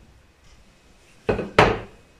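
A small glazed clay plate set down on a hard countertop: two knocks a third of a second apart, the second louder and sharper with a brief ring.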